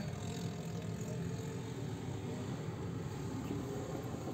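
Steady low hum inside a Mazda car's cabin, with no clear events.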